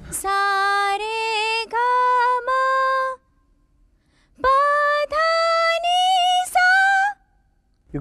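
A woman singing sargam syllables unaccompanied in a vocal range test: two phrases of four held notes each, stepping up the scale, the second phrase pitched higher than the first.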